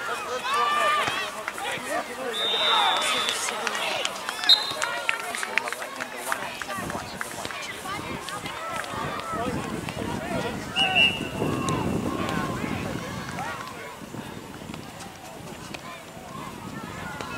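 Voices calling out across an outdoor soccer field, with short, high whistle tones about three seconds in, again briefly at four and a half seconds, and once more near eleven seconds.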